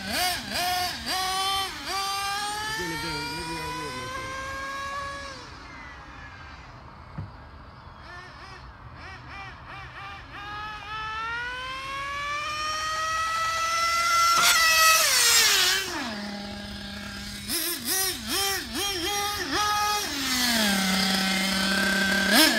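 Nitro engine of a 1/8-scale RC on-road GT car revving high as the car accelerates, its pitch climbing and then falling off. It winds up again, then drops to a steady idle with a few quick throttle blips near the end. The two-speed transmission isn't shifting, so the engine winds out in first gear.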